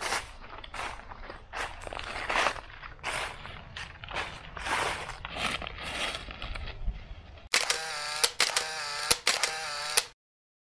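Footsteps crunching through a thick layer of dry fallen magnolia leaves, irregular crunches a few per second. About seven and a half seconds in, a louder, different sound with wavering tones and several sharp clicks cuts in abruptly.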